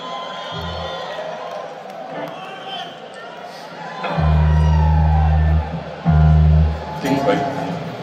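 Live arena rock concert sound from the audience: crowd voices and calls, with two long, deep, steady bass notes from the stage about four and six seconds in.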